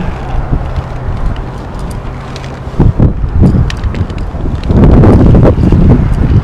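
Wind buffeting the microphone, gusting harder about three seconds in and loudest near the end, with a few faint ticks.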